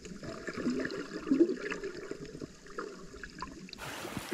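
Muffled water sound heard from an underwater camera as a snorkeler swims through shallow seawater, a soft steady wash with faint low gurgles. Shortly before the end it changes abruptly.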